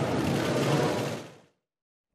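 Live sound of a group photo session: a rapid clatter of many camera shutters over a murmur of voices in a large hall, fading out about a second and a half in.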